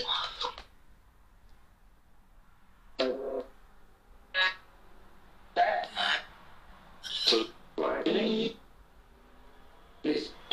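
About five short, low voice fragments with quiet pauses between them, too indistinct for the words to be made out.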